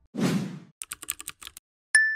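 End-screen motion-graphics sound effects: a short whoosh, then a quick run of keyboard-typing clicks, and near the end a sharp click with a bright ringing ding that fades away.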